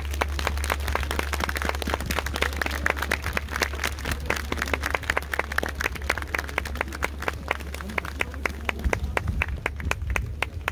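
Crowd applauding, a dense patter of hand claps that thins out toward the end, over a steady low hum.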